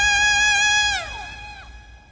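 A woman singing a long, high held note into a microphone; about a second in, the note slides down in pitch and fades away.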